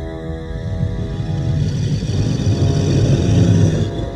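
A film creature's deep, rough growl, swelling louder over about three seconds and cutting off just before the end, over a tense horror score.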